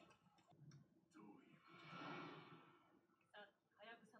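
Near silence: faint speech from the episode playing quietly, with a soft rushing noise about two seconds in.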